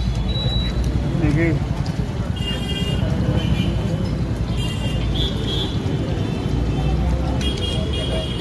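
Roadside street noise: a steady low rumble of passing motor traffic with background voices, and short high-pitched tones three times.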